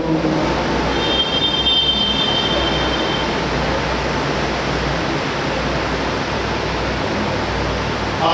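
Steady, even rushing noise of a large congregation in a prayer hall while it is prostrate and silent between the imam's calls. A faint high tone sounds for about two seconds near the start.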